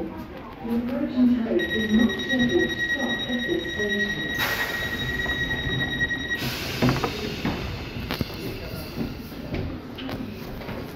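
Class 319 electric train's door-closing warning: a steady high beep lasting about five seconds, with a hiss building in its last two seconds as the air-operated sliding doors close, then a thump as they shut about seven seconds in.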